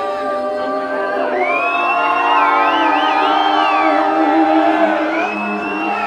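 Live female a cappella singing in long held notes, several pitches sounding together. A high, wavering tone rises over them in the middle and again near the end, with crowd noise underneath.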